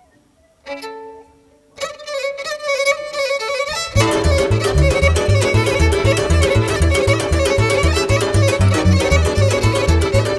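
Romanian Gypsy taraf music played live on violin, cimbalom, double bass and accordion. It opens with a few sparse notes, thickens from about two seconds in, and about four seconds in the full band comes in at a fast tempo over a steady, driving bass beat.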